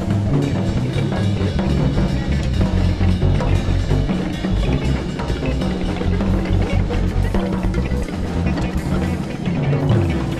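Live electric jazz-funk improvisation: a drum kit with timbales drives a busy groove under electric bass and electric guitar, all playing together at full level.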